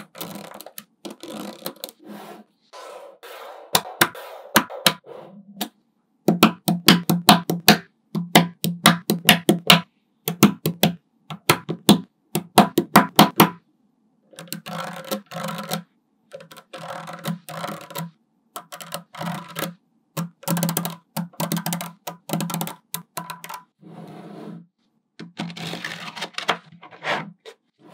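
Small magnetic balls clicking as strands of them are laid down and snap onto a flat slab of balls, in runs of rapid clicks with short pauses between. The quickest, loudest run comes in the first half.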